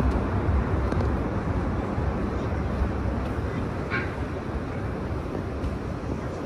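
Outdoor city street noise: a steady low rumble of traffic.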